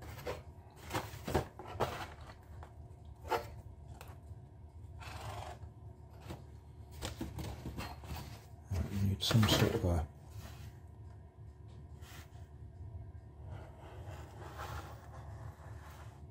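Hands handling a sheet of corrugated pizza-box cardboard and a steel ruler, with scattered short taps and scrapes. The loudest sound is a longer rustle and knock about nine seconds in, as the card and ruler are shifted.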